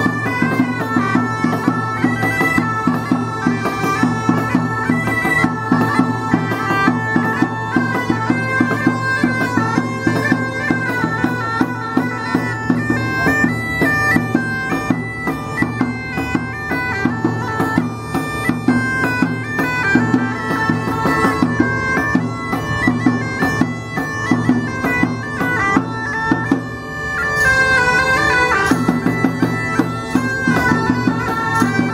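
Two bagpipes playing a tune together over their steady low drone, with a snare drum beating time underneath.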